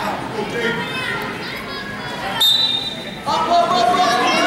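Spectators and coaches shouting at a wrestling match in a gym, several voices at once with no clear words, with a loud, sustained yell starting near the end.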